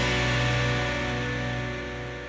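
TV quiz-show musical sting played over the logo card between rounds: a single sustained chord that slowly fades.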